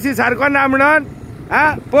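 A person speaking, with a short break about a second in before the talk resumes.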